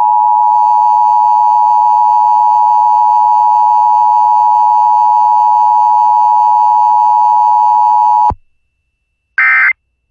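Emergency Alert System two-tone attention signal, a steady loud dual tone lasting about nine seconds that cuts off sharply. Near the end come two short screeching bursts of EAS SAME digital data, typical of the end-of-message code that closes an alert.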